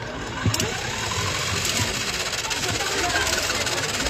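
Battery-powered motor of a Beyblade Speedstorm Motor Strike stadium spinning its centre disc: a steady mechanical whirring rattle that slowly grows louder.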